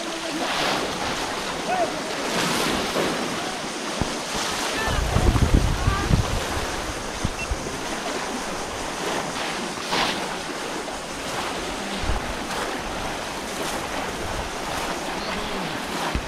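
Muddy water splashing and sloshing as many people wade through a flooded ditch, with distant voices. Wind buffets the microphone, most strongly around five to six seconds in.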